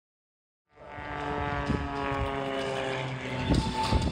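Jet aircraft flying past with its engine note falling steadily in pitch as it goes by. The sound starts abruptly just under a second in.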